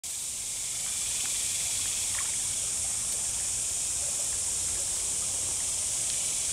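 A creek running with water, a steady, even hiss.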